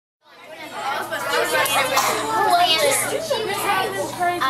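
A brief moment of silence, then a room full of schoolchildren chattering with many overlapping voices, fading in within about half a second.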